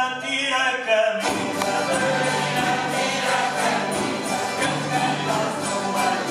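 An amateur tuna group singing together, accompanied by strummed small plucked string instruments and guitars. About a second in, the ensemble comes in fuller.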